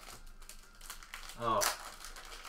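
Clear plastic sleeve crinkling and rustling as it is handled, in soft scattered bits. About one and a half seconds in, a man's brief "Oh" is the loudest sound.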